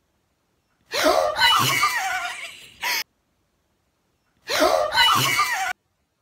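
Two girls crying out "¿Qué?" in shrieks and gasps of fright and surprise as the power comes back on. The outburst comes twice, about a second in and again near the end, with dead silence around each.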